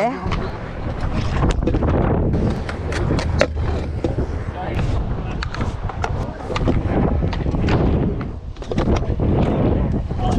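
Stunt scooter wheels rolling on a concrete skatepark, a continuous rumble broken by frequent sharp clacks and knocks from the deck and wheels.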